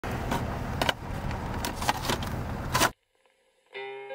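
Rumbling noise inside a car, broken by several sharp clicks, cuts off abruptly just before three seconds. After a brief silence, plucked-string music begins near the end.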